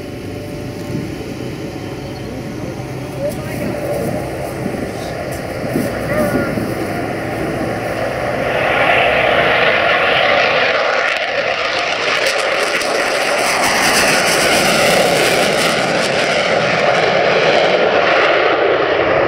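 Twin General Electric J79 turbojets of an F-4 Phantom on a low flyby: jet noise building as it approaches, then from about eight seconds in a loud roar as it passes and pulls up with afterburners lit.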